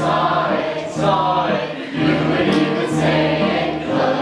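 Choir singing.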